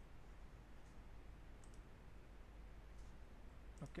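A few faint, isolated computer mouse clicks over near-silent room tone, a second or so apart.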